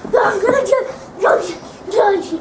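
An overtired young girl yelling in short, high yelps, three in quick succession.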